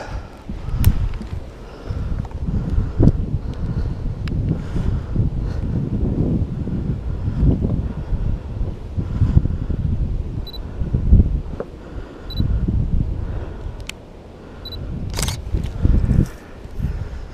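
A handheld photo camera being used: several sharp shutter-like clicks and three short, high autofocus-confirmation beeps about two seconds apart in the second half, with a louder clatter of handling near the end. Wind buffets the microphone underneath.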